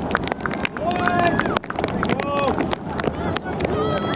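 Shouting voices at a girls' soccer match: several drawn-out, rising-then-falling calls, with many short sharp clicks and knocks throughout.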